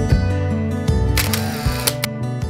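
Gentle acoustic guitar background music, with a short camera-shutter sound effect laid over it a little over a second in.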